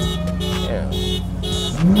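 A low steady drone from slowly passing cars, under a short electronic beep repeating evenly about twice a second.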